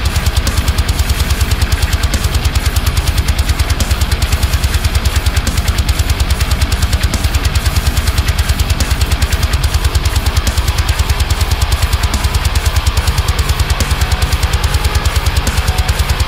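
Heavy metal (djent) full mix: a high-gain, drop-F-tuned eight-string electric guitar played through a Neural DSP amp-sim plugin over a drum backing. It runs as a fast, even pulse of chugging hits.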